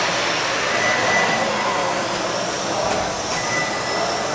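Several 1/12-scale electric RC pan cars with 17.5-turn brushless motors running laps on a carpet track: a steady mix of motor whine and tyre noise, its pitch wavering as the cars speed up and slow down.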